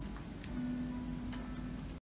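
A few separate computer mouse clicks over low room noise, with a faint steady low hum in the middle.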